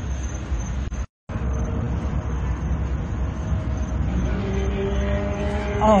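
Steady low outdoor rumble, like traffic noise. The sound cuts out completely for a moment about a second in, and a held musical tone comes in over it near the end.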